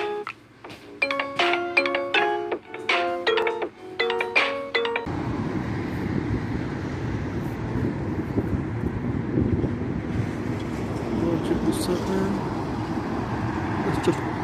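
A short musical intro of bright, chime-like notes stepping up and down, which cuts off suddenly about five seconds in. It gives way to steady outdoor noise, a low rumble with hiss like road traffic.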